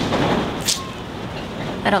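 Wind buffeting the microphone: a steady rushing rumble with one brief hiss, so noisy that it drowns out filming.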